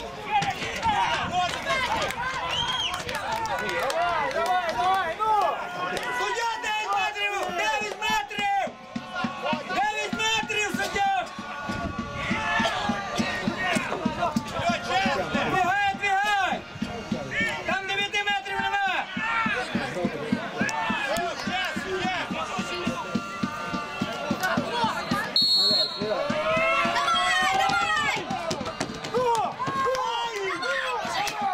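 Several men's voices shouting and calling out at once across an open football pitch during a free kick. Near the end comes one short, high whistle blast.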